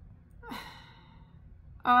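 A woman's breathy sigh about half a second in, lasting about half a second. Her spoken "um" follows near the end.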